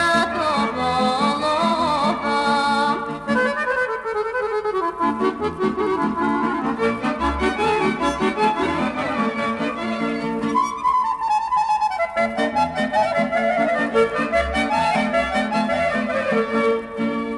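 Bulgarian folk song music playing: a mainly instrumental passage, with a melody gliding over a rhythmic accompaniment.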